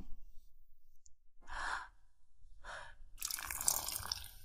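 Tea poured out of a cup onto the floor: two short splashes, then a longer pour near the end.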